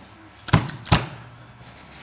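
Two sharp knocks, a little under half a second apart, as carpet seaming tools are handled and set down on the carpet.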